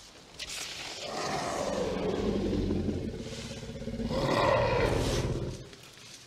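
Tyrannosaurus rex roar sound effect from the film: two long roars, the first sliding down in pitch and the second, near the end, louder.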